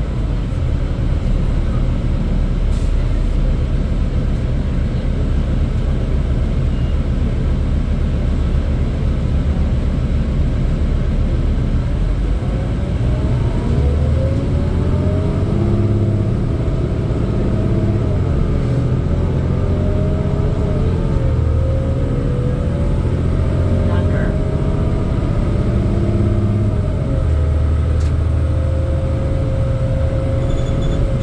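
Cabin sound of a 2008 New Flyer D40LFR city bus with a Cummins ISL diesel and Allison B400R automatic transmission: a steady low rumble for the first twelve seconds or so, then the engine and driveline whine rising as the bus accelerates. The pitch climbs, drops back once and climbs again as it shifts.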